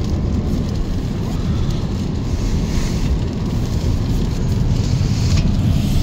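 Rain falling on the roof of a fifth-generation Toyota Prius, heard inside the cabin as a steady hiss over road rumble; it comes through a lot even with the roof shade closed.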